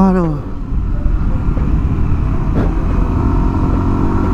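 Yamaha NMAX 155 scooter's single-cylinder engine running at a steady cruise, heard from an on-board camera as a constant low hum.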